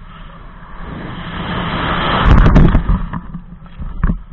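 Wind rushing over a helmet camera's microphone in a base jump's freefall, building over about two seconds to a peak with a few sharp cracks, then falling away as the parachute opens.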